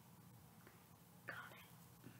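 Near silence with a faint steady hum, broken once about a second and a half in by a brief, faint whisper.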